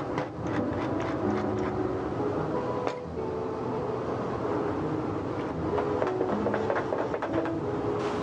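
Tomato-cream sauce simmering in a metal sauté pan, a steady sizzle with many small crackling pops, under soft background music with held notes.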